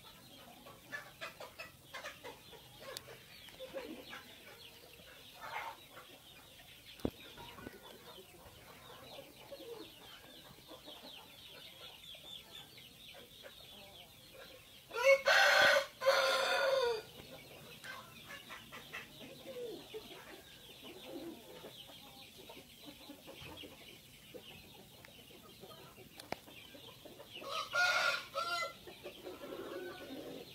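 Dong Tao rooster crowing: one loud crow of about two seconds about halfway through, falling at its end, and a shorter crow near the end, with soft clucking between.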